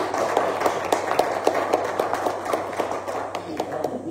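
Congregation applauding, with many distinct individual hand claps in an irregular patter.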